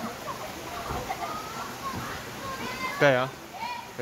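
Background chatter of children and adults at a busy pool, with a close voice speaking briefly and more loudly near the end.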